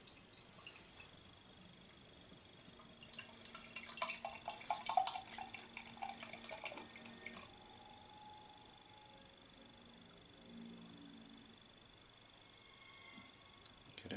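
Canned beer poured into a tulip glass: liquid splashing and foaming in the glass. It is loudest for a few seconds from about three seconds in, then goes quiet while the can is drained.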